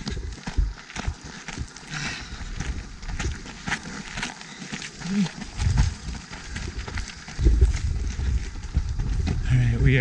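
A trail runner's breathing and footsteps on a dirt trail on a climb, with wind rumbling on a handheld camera's microphone in stretches.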